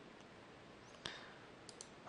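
Near silence with a single computer mouse click about a second in, selecting an item from a drop-down menu, then two faint ticks near the end.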